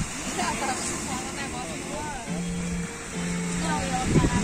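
Surf washing on a sandy beach as a steady rushing noise. Music runs over it: a wavering melodic line, and two held low notes in the second half.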